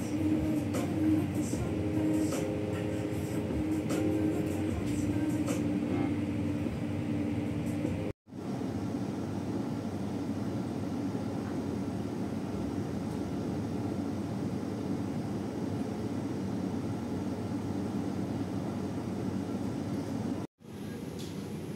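Steady low hum and rumble of indoor room noise, like a ventilation or appliance hum, with a sudden brief dropout about eight seconds in before a similar hum resumes.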